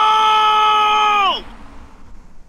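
A person's long drawn-out shout held on one steady pitch, bending down and breaking off about one and a half seconds in.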